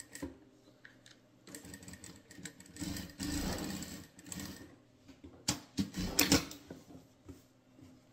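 Sewing machine stitching a short seam through layered fabric scraps on a denim base, running for about three seconds, loudest in the middle. A few sharp clicks follow a couple of seconds later.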